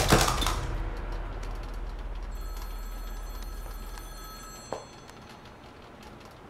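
A low rumble fading away after a loud hit at the start, then a phone ringing quietly for about two seconds, cut off by a single click.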